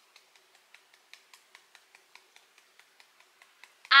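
Fingertips tapping softly and steadily on the side of the other hand, about five taps a second: EFT tapping on the side-of-hand (karate chop) point.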